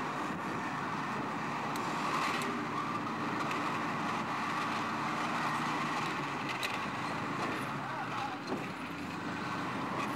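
An army bulldozer's diesel engine running steadily, with a few sharp knocks about two seconds in and again near the middle.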